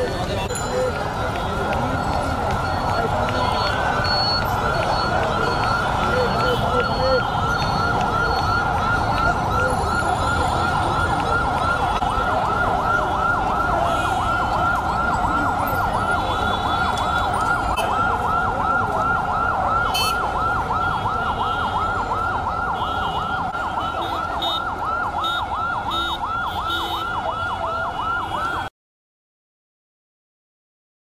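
An emergency vehicle's siren in a fast yelp, its pitch rising and falling several times a second, over a haze of street noise. It cuts off suddenly near the end.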